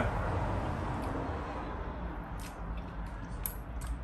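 Quiet handling noise as fish flesh is pulled apart by hand, with a few faint small clicks in the second half, over a steady low background rumble.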